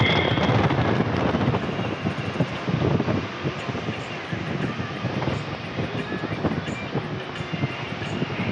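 Wind buffeting the microphone over the rumble of a vehicle driving along a road: a steady rushing noise that eases slightly after about three seconds.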